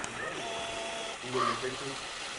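Faint, indistinct voices of people talking in the background.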